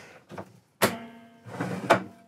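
Motorhome lounge table top sliding on its runners: a knock as it is released, a steady ringing hum for about a second as it slides, and a second knock as it stops at full travel.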